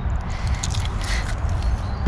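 Low steady rumble of wind on the microphone, with a few faint scrapes and taps from the camera being handled.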